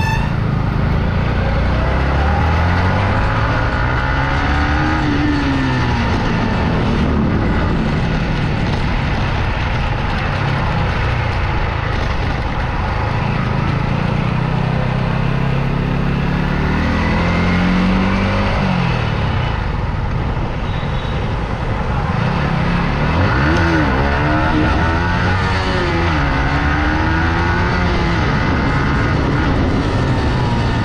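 Yamaha MT-15's 155 cc single-cylinder engine running through its stock exhaust while riding, its pitch climbing in several pulls of acceleration and falling back in between.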